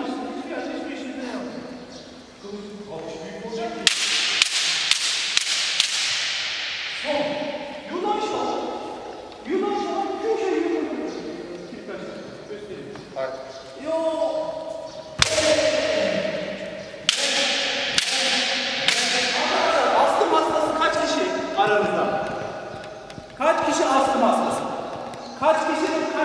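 Bamboo shinai striking kendo armour with sharp cracks, a quick run of about five about four seconds in and single hits spread through the rest, each with a ringing tail in a large hall. Between the hits come drawn-out kiai shouts.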